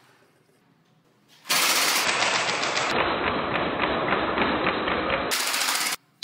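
Near silence for about a second and a half, then a loud, rapid rattle of evenly spaced clicks like machine-gun fire. It runs for about four seconds and cuts off suddenly just before the end.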